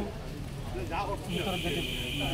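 Man speaking Assamese, with a steady high hiss setting in a little past halfway.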